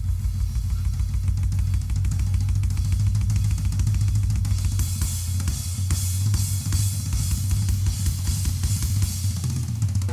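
Acoustic drum kit solo on a Ludwig kit: fast, dense strokes on snare, toms and bass drum under a steady wash of cymbals and hi-hat, the cymbals growing brighter about halfway through.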